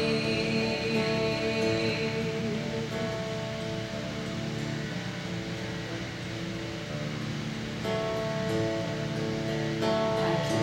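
Acoustic guitar playing steadily, softer through the middle and filling out again near the end.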